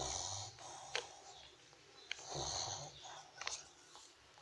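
Newborn pug puppies nursing, with snore-like, wheezy breaths, two longer ones about two seconds apart, and a few small sharp clicks.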